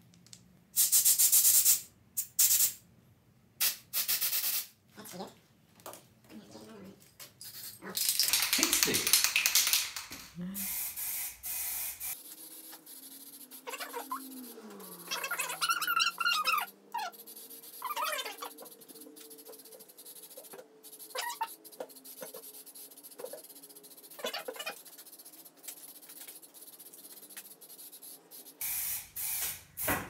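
Short, loud blasts of compressed air from an air blow gun: three in the first few seconds and a longer one near ten seconds. After that, a spray can hisses in short bursts as it sprays paint.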